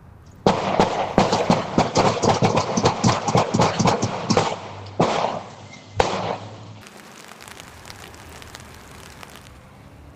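A rapid volley of gunshots, several a second for about four seconds, followed by two single shots about a second apart, picked up at a distance by a doorbell camera's microphone.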